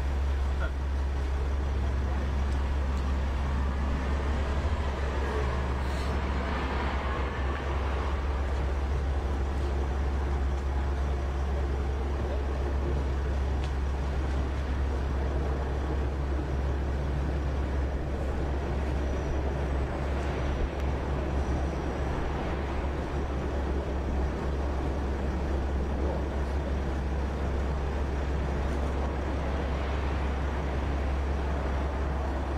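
Steady low rumble of a van engine idling close by, with street traffic noise and faint voices around it.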